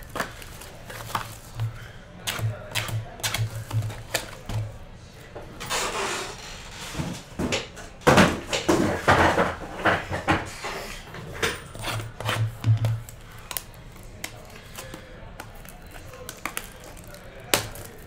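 Cardboard trading-card hobby box being handled and opened, with packs being pulled from it: irregular taps, knocks and clicks of cardboard. There is a stretch of scraping about six seconds in and a run of louder knocks from about eight to ten seconds.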